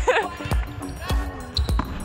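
Background music with a steady beat, a little under two beats a second.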